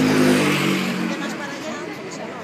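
A road vehicle passing close by: its engine tone falls slowly in pitch as it goes past, with tyre noise loudest in the first second and then fading.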